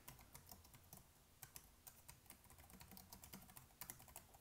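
Computer keyboard typing: faint, irregular keystrokes, with a quick cluster of strokes near the end.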